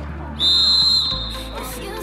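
Referee's whistle: one short steady blast of about half a second, starting about half a second in, signalling the kick-off. Background music runs underneath.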